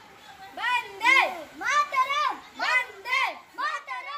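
Children's voices shouting a rhythmic chant, high-pitched calls about two a second.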